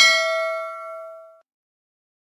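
A single bell 'ding' sound effect, struck once and ringing with several clear tones before cutting off abruptly about a second and a half in.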